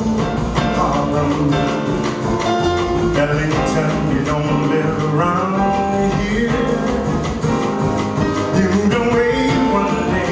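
Live jazz band playing, with plucked upright double bass, piano and drums under a male singing voice.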